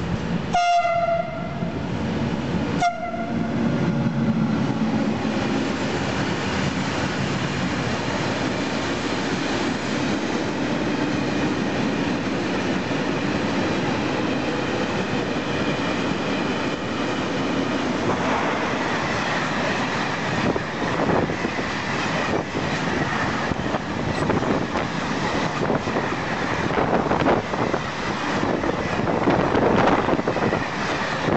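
An Italian electric freight locomotive sounds two short horn blasts as it approaches. A long freight train then rushes past close by: a steady rumble, with wheels clicking over the rail joints that grows busier and louder in the second half as the wagons go by.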